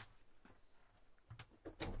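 Mostly quiet small-room tone, with a few faint clicks near the end as a wooden overhead cabinet door is pulled open.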